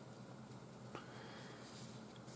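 Faint room tone with a steady low hum, and a single soft click about a second in.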